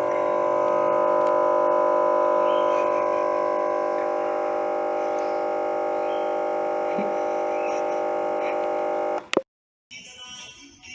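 Laptop speakers droning a loud, steady electronic buzz while Windows hangs on a blue-screen crash, the typical sound of the audio buffer stuck looping when the system freezes. It cuts off abruptly near the end with a click.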